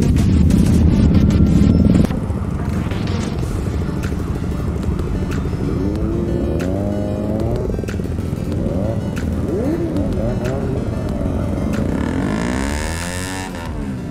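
Several motorcycle engines running together during a group ride, heard from one of the bikes, under background music. The engine noise is loudest for the first two seconds.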